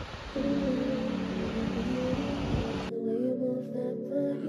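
Slow, soft background music with sustained tones comes in just after the start, over a hiss of wind and surf; about three seconds in, the wind and surf noise cuts off suddenly, leaving only the music.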